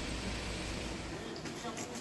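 A steady rushing noise with a low rumble that cuts off about a second in. Faint voices and a few light clicks follow.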